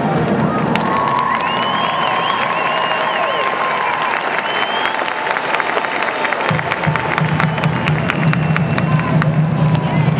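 Large stadium crowd cheering and applauding, with many sharp hand claps and high wavering shouts through the noise. A low steady rumble comes back about six and a half seconds in.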